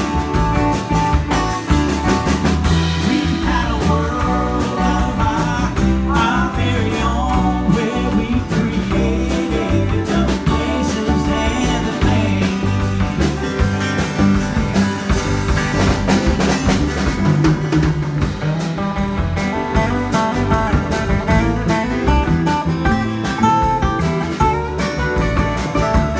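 A small acoustic string band playing live, with guitars strummed and picked over an upright bass. With no words sung, it is an instrumental passage with a guitar taking the lead.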